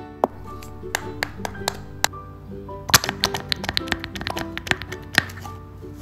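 Light background music with a run of quick taps and clicks from paper cutouts being handled and tapped against a paper sheet, densest in the second half, with the sharpest tap about three seconds in.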